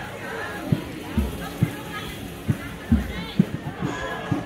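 Low drum beats, mostly in groups of three about half a second apart, under the faint voices of a crowd outdoors.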